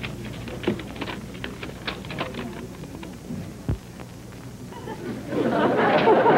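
Light irregular clicks and rustling at a bank counter, with a single low thump a little before the four-second mark, over a steady low hum. About five seconds in, studio audience laughter swells up and grows louder.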